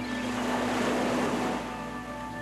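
Water washing in a single wave-like surge that swells and then fades within about a second and a half, over soft background music with long held notes.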